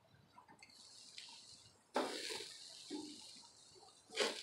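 Pork chops sizzling on the hot grate of a small gas grill. A sudden loud burst of sizzling comes about two seconds in and then dies down.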